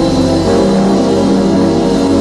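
Background music of long held chords over a deep, steady bass.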